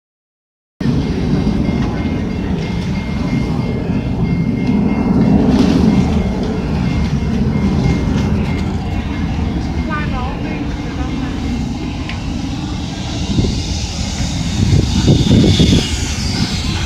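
Steady low rumbling noise with voices in the background, and a brief run of high chirps about ten seconds in.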